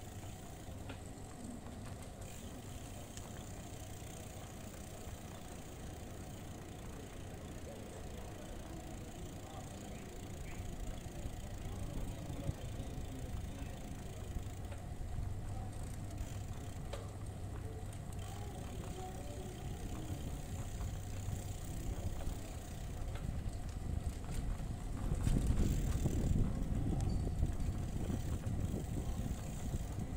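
A bicycle rolling over stone paving: steady rolling and riding noise, with a heavier low rumble near the end.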